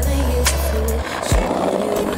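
Skateboard wheels rolling over brick paving, a rough grinding noise that grows about a second in, heard over an R&B song with a steady bass.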